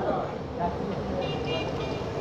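A pause in the preaching: steady outdoor background noise, with faint distant voices or traffic and a few faint brief tones partway through.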